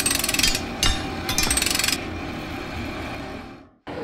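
Sound-effect sting over a title card: three short bursts of rapid mechanical rattling in the first two seconds over a low rumble, which fades out just before the end.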